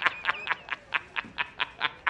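A man laughing hard in a steady run of 'ha-ha-ha', about four to five laughs a second: an inserted film-clip laugh used as a meme.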